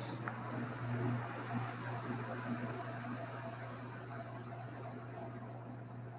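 Room heater that has just switched on, its fan blowing a steady rushing noise.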